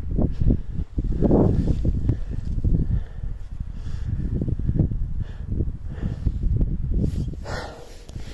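Wind buffeting the microphone in uneven gusts, with a few brief, softer, higher-pitched puffs about one and a half seconds in and near the end.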